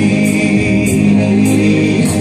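Live pop ballad: a male singer's voice through a PA system over backing music, the notes held steady, with light high-pitched percussion ticks every half second or so.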